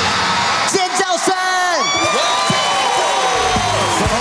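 A break in a live pop stage performance: the beat drops out and voices whoop and call out in rising and falling glides over a thin backing. The beat comes back right at the end.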